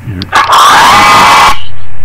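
LEGO Mindstorms EV3 'Speed up' sound file playing: a loud motor-speeding-up sound effect about a second long, dense and noisy, with a faint whine rising slightly in pitch partway through.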